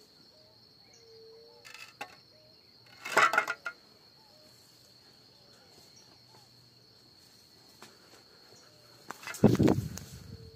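Rustling and crackling in dry undergrowth: a short burst about three seconds in and a louder one near the end. Under it runs a steady high-pitched insect drone.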